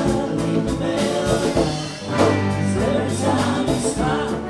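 Live band music: a man singing lead with other voices joining in, over a hollow-body electric guitar, a second electric guitar, electric bass and hand-played congas.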